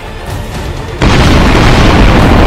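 Cinematic trailer boom hit about a second in, a deep sudden impact that runs on as a loud low rumble, under trailer music.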